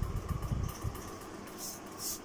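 Handling noise as a hand moves over the notebook close to the phone: low rumbles and soft bumps in the first second, then a short high scratch near the end.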